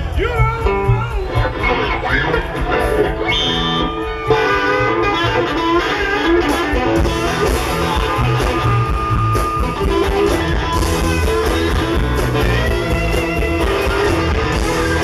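Live blues band playing, led by an electric guitar (a Fender Stratocaster) playing lead with bent notes. The music gets louder and fuller about four seconds in.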